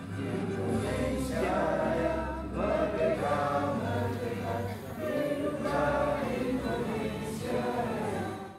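A group of voices singing together in a chorus, in repeated phrases that rise and fall.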